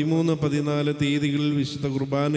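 A man's voice speaking into a microphone in a level, near-monotone, almost intoned delivery, running without a pause.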